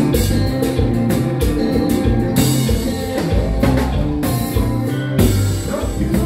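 A live konpa band plays on drum kit, electric guitar and keyboard, with a steady beat of drum hits. Cymbal crashes wash over the music several times in the second half.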